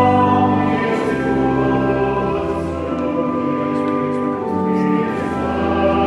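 A congregation singing a hymn together over long held low chords, the notes changing every second or two.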